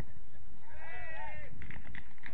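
A single high-pitched, wavering shout from a player on the pitch, lasting under a second, over a steady low rumble.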